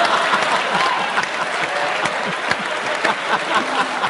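A large theatre audience applauding steadily after singing along. The tail of the crowd's sung notes fades out in the first second.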